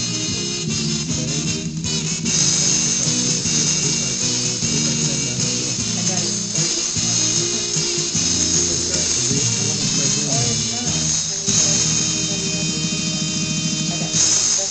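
Polka band recording playing on the radio through a stereo's speakers, with accordion-like held notes over a steady rhythm, heard near the close of the tune.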